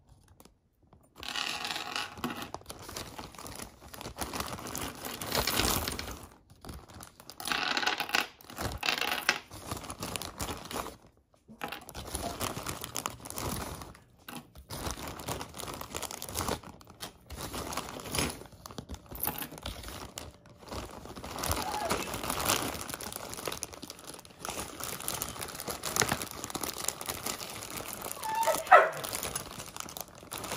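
Clear plastic zip-top bag crinkling and rustling in irregular bursts as a hand rummages through the jewelry inside it. Near the end a dog gives a short call.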